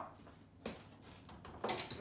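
A steel wrench clinking against metal as it is put away in a toolbox. There is a faint click under a second in, then a louder metallic clatter near the end.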